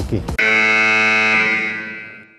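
Game-show style wrong-answer buzzer sound effect: one steady buzzing tone that starts abruptly under half a second in, holds for about a second and then fades away, marking the behaviour shown as wrong.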